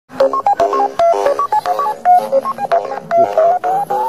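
A rapid melody of short electronic beeps jumping up and down in pitch, about five notes a second, like a chiptune or keypad-tone jingle.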